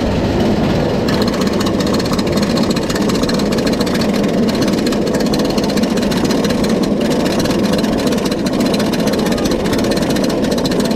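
Roller coaster chain lift hauling a single-rail RMC Raptor train up the lift hill: a steady mechanical rumble with a fast, even rattle of clicks.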